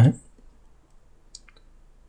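A short spoken syllable at the very start, then a quiet room with two faint, short computer clicks about a second and a half in.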